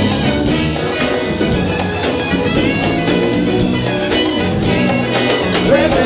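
Live funk band with a horn section playing an instrumental passage: brass lines over drums, bass and electric guitars, with a steady beat.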